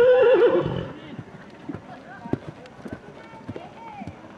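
A horse whinnies once at the start, a loud quavering call lasting under a second. After it come soft hoofbeats of a horse moving on the arena's sand.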